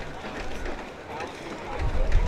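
Background chatter of people talking nearby, with wind buffeting the microphone as a loud low noise that starts near the end.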